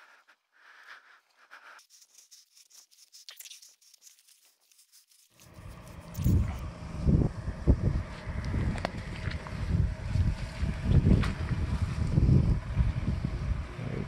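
Wind buffeting the microphone: a loud, irregular low rumble in gusts that sets in suddenly about five seconds in, after a few quiet seconds of faint rustles.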